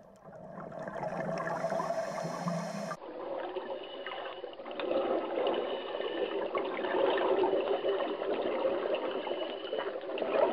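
Underwater camera sound of moving water: a steady wash with a low hum, then, after a cut about three seconds in, gurgling and sloshing water just below the surface.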